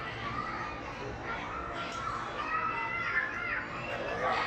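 Background of several children's voices talking and calling at once, with high-pitched child calls in the second half.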